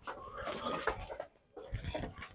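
Faint background talking, then a short dull thump near the end.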